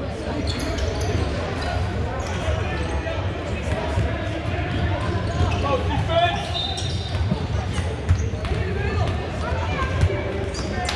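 Basketball dribbled on a hardwood gym floor, its bounces heard as sharp thuds over a steady background of players' and spectators' voices in the large gym.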